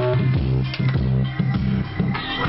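Background music with a bass line and guitar.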